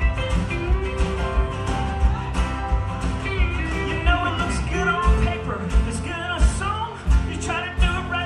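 A live country-rock band playing: a male lead vocal sung over acoustic guitar, electric bass and drums with a steady kick-drum beat.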